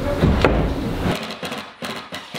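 Wood knocking and scraping as a wooden TV frame is pushed into place on the wall and fastened, with a sharp knock about half a second in and a run of short knocks and clicks in the second half.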